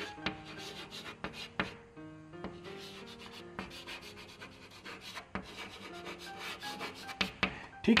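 Chalk writing on a blackboard: a run of quick scratching and tapping strokes as a word is written out. Faint background music notes are held underneath.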